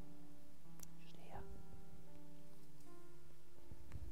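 Soft, sustained keyboard chords played gently by a church worship band, with a brief murmured voice just over a second in.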